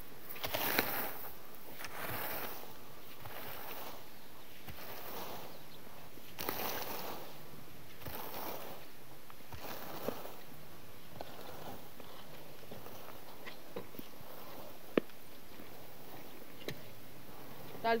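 Freshly mown grass being raked and gathered, a rustling swish with each stroke, several strokes in the first half. After that it is quieter, with a few small clicks and one sharp click near the end.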